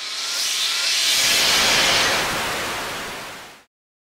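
Whoosh sound effect for an animated logo: a rising swell of hissing noise that builds over the first second and a half, then fades and cuts off suddenly near the end.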